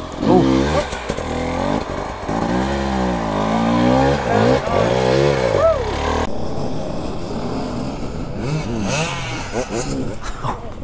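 Enduro dirt bike engine revved hard over and over, the pitch swinging up and down, while the bike sits bogged on a steep slope and gives off heavy smoke. About six seconds in it gives way to a quieter, steadier engine sound.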